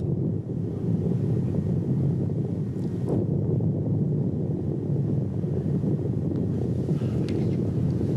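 Steady low rumbling noise with no breaks, like wind buffeting a microphone, from the outdoor camera footage of the volcano. There is a faint brief click about three seconds in.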